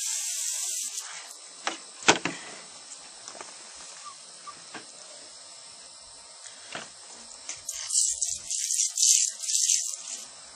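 Water from a hose spray nozzle hissing onto a plucked chicken carcass to rinse manure off it. It sprays for about a second at the start and again in several short bursts over the last two seconds, with a few sharp knocks in between.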